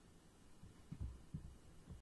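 Near silence with three faint, short low thuds, the first about a second in, the last near the end.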